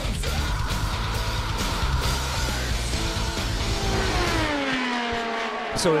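Music plays, and from about halfway through an IndyCar race car passes at speed, its engine note sliding down in pitch as it goes by.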